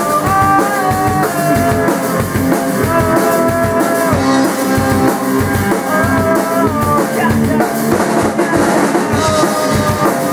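Instrumental rock jam: electric guitar playing a melody of held notes that step up and down, over a steady drum-kit beat.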